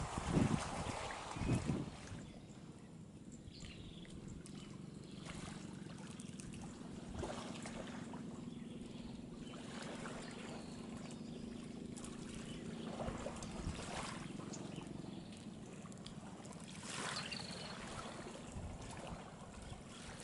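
Steady low drone of distant motor fishing boats' engines over small waves lapping, with a few loud thumps in the first two seconds.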